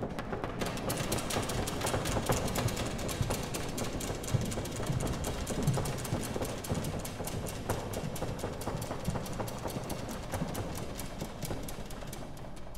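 Applause: many hands clapping steadily, the separate claps heard distinctly, easing off slightly near the end.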